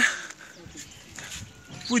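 A man's loud, drawn-out spoken word ends at the start. A pause of faint background sound follows, and his speech resumes near the end.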